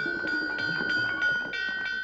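A hanging metal plate used as a school bell, struck rapidly with a hammer: about four strikes a second over a steady ring.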